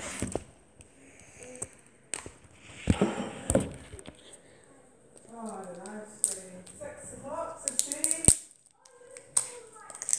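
Plastic toy capsule ball being bitten and pried at: scattered sharp plastic clicks and cracks, several in quick succession near the end, with a muffled voice in the middle.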